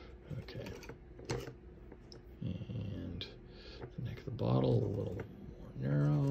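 Palette knife scraping and tapping through thick oil paint on a panel, a few short strokes in the first second and a half, followed by a man's low murmured voice sounds in the second half.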